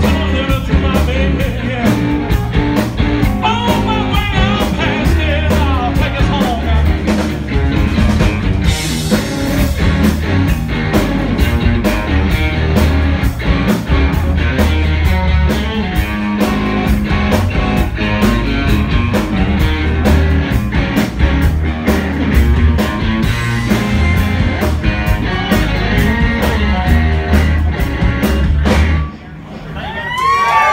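Live rock band (two electric guitars, electric bass and drum kit) playing a driving rock-and-roll number through a PA, with guitar lines bending in pitch over a steady drum beat. The band stops together about a second before the end.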